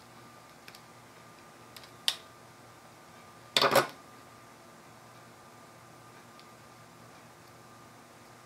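A few small clicks of tools and parts being handled on a wooden table, a sharper click about two seconds in, then a brief clatter about three and a half seconds in as a pair of wire strippers is set down on the tabletop.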